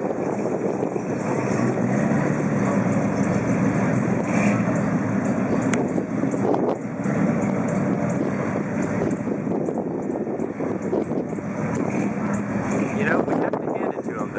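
Engine of a full-size convertible 'donk' on 30-inch wheels running steadily at low speed as it rolls slowly by, with voices in the background.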